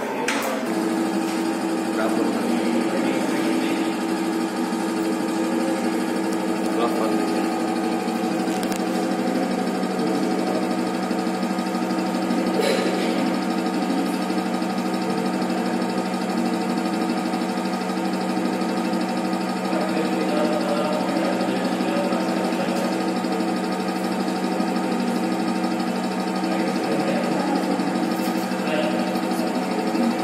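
Hydraulic pump of a universal testing machine starting about half a second in and then running with a steady hum while it loads the specimen in a tension test.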